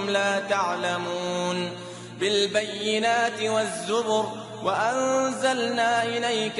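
A single voice chanting melodically in long, drawn-out notes that waver and slide in pitch, softer for a moment about two seconds in.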